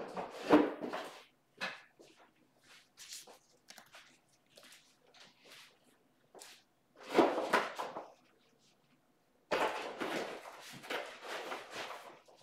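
Scattered handling and movement noises in a small room: rustling, clicks and light knocks as someone moves about and handles things, with louder bursts of rustling about a second in, around seven seconds and from about nine and a half seconds on.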